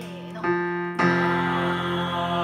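An electronic keyboard holds a sustained F. About a second in, a small group of voices comes in together on the same note, singing one long held tone over it.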